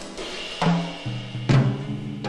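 Instrumental break in a rock song: the bass drops out and the drums play a few sparse hits, the loudest about one and a half seconds in.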